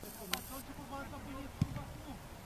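Voices of players calling out across a football pitch, with a sharp click near the start and a dull thud about a second and a half in.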